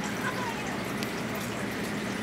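Aquarium filter running, with water trickling and bubbling steadily into the tank.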